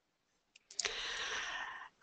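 A few small clicks, then about a second of steady breathy noise, an intake of breath just before speaking.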